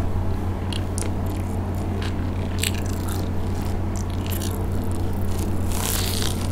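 Close-miked chewing of a crumb-coated cheese corn dog, with scattered sharp little crunches, then a bigger crunchy bite into the crust near the end. A steady low hum runs underneath.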